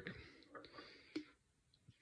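Near silence: faint room tone, with one faint click a little after a second in.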